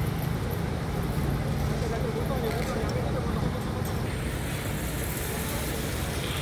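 A steady low rumble of idling lorry engines, with scattered voices talking in the background.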